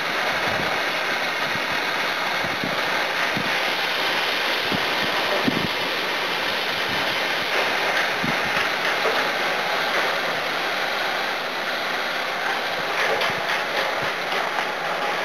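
Water fire extinguisher discharging: a steady rush of the water jet from the hose nozzle.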